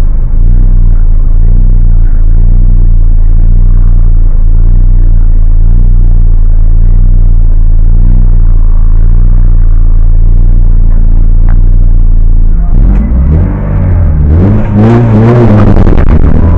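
Hillclimb race car's engine, heard from inside the cabin, idling loudly and steadily at the start line. About three-quarters of the way through it is revved in several rising and falling blips.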